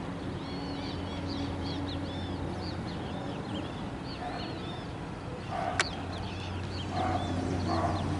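Birds chirping in many short, repeated arched notes, with a few lower calls in the second half, over a low steady hum. A single sharp click comes about six seconds in.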